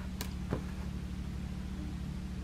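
A steady low hum, with a sharp click near the start and a soft tap about half a second in.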